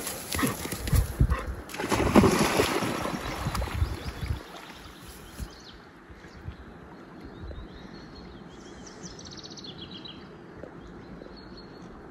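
A dog crashing through grass and splashing into a river, with a burst of thumps and sloshing water over the first four seconds, then swimming out quietly.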